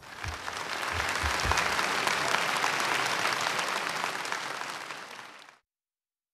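Audience applauding: the clapping builds over the first second, holds steady, then thins out and cuts off suddenly shortly before the end.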